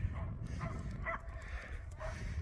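Wind rumbling on the microphone, with a few faint, short, high whines from a dog about half a second and a second in.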